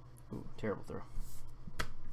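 A brief murmured sound from a man's voice, then a soft swish and one sharp click near the end as trading cards are handled and laid down on the table.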